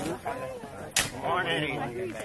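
A metal shovel striking dry, stony earth: one sharp clack about a second in, with voices talking over it.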